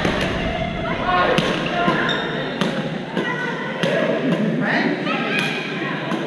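Badminton rackets striking shuttlecocks, a string of sharp hits every second or so, from this court and the ones around it, in an echoing sports hall. Background voices from the other courts run underneath.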